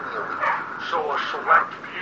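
Speech only: men talking in a TV programme, heard muffled and thin through a computer's speakers.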